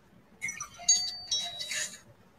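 Short, tinny electronic chime tones mixed with snatches of music, with several steady high tones, starting about half a second in.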